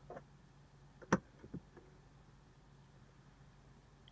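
A single sharp click about a second in, with a few faint taps before and after it, against a quiet car-cabin background: small handling sounds at the centre console.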